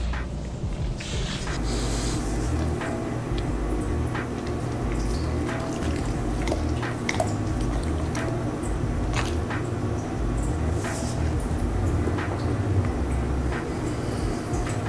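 A Siberian husky licking and smacking his lips after tasting sour lime: many short wet clicks and smacks, over a background music beat with a steady low bass.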